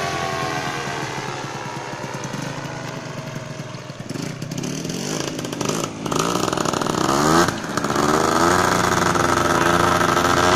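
Small two-stroke-type engine of a paramotor running in flight, its pitch wavering up and down as it passes and the throttle changes. It grows louder near the end as it comes closer.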